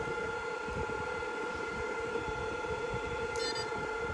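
16-FET electric fishing pulse machine switched on and running, a steady high-pitched whine over a lower buzz from its pulse circuit. A brief high chirp sounds about three and a half seconds in.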